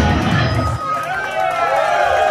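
A live rock band's final hit cutting off, the bass and cymbals dying away within the first second, then the audience cheering and shouting.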